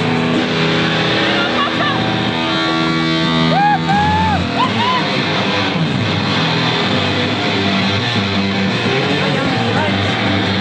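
Rock band playing live, with electric guitar and bass guitar through amplifiers; a few bent lead guitar notes rise and fall around four seconds in.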